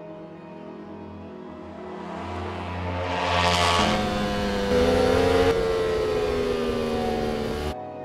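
Ducati Panigale sport-bike engines growing louder over the first few seconds, then a high-revving engine note held for several seconds before cutting off suddenly near the end, with background music underneath.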